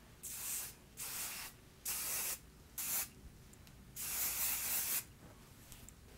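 Spray bottle of IGK Good Behavior Spirulina Protein Smoothing Spray misting onto hair in five separate hissing sprays, the last the longest, about a second.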